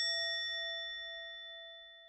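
A single bell-like ding rings out as one clear tone with a few higher overtones, fading away steadily.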